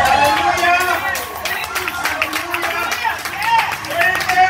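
Church congregation voices overlapping and calling out, with scattered hand claps.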